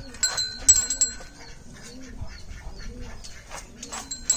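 Birds cooing repeatedly in the background, a low rising-and-falling call about every half second, over bright bell-like ringing that is loudest in the first second and scattered clicks.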